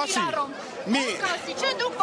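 Several men's voices arguing over one another in a dense crowd, with no break in the talk.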